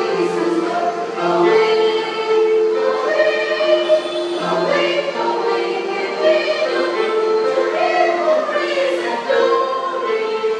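Mixed church choir, mostly women with a few men, singing a hymn in harmony with long held notes.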